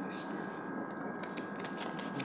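Tarot cards being handled as one more card is drawn from the deck: a short swish, then a run of light, irregular clicks and snaps from about halfway through.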